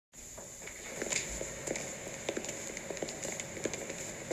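Old-film crackle: a steady high hiss with irregular faint clicks and pops scattered through it.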